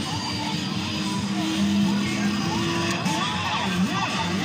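Jolly Roger racing-car carousel kiddie ride playing its song while it turns, with long held notes giving way to a sung melody near the end.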